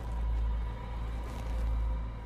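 Low, dark background music: a sustained drone with a deep bass floor that swells and eases twice.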